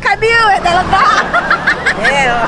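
Speech only: several voices talking over one another.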